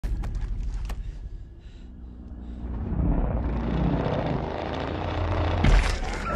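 Film sound effects: a steady low rumble with a few sharp clicks at first, then a swelling noise building from about halfway, ending in a loud hit just before the creature's jaws appear.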